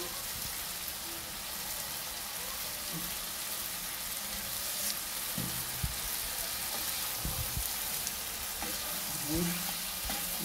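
Diced liver and peppers sizzling steadily in hot oil in a frying pan, with a few soft knocks of a wooden spoon against the pan in the second half. Loud sizzling like this means the pan is dry, with no liquid left.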